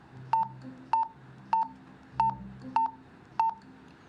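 Motorola RMU2080D two-way radio giving a short keypad beep at each press of its B button: six beeps about 0.6 s apart, each press stepping the channel's code value up by one in programming mode.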